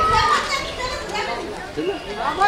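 Children's voices shouting and chattering in an outdoor crowd, with one high call right at the start.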